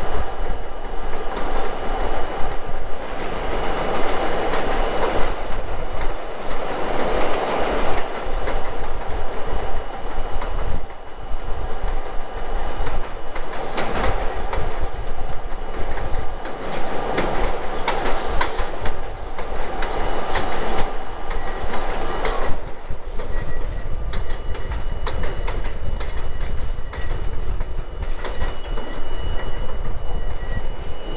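R32 subway cars running on an elevated steel structure: wheels rumble and clatter over the rail joints, the noise swelling and easing every few seconds. In the last third the rumble drops back and a thin, high-pitched wheel squeal comes through as the train runs into a station.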